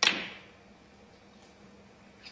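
A single sharp click of a snooker shot: the cue tip strikes the cue ball, which hits a red lying just in front of it, the two impacts heard as one crack. It fades over about half a second in the arena's echo.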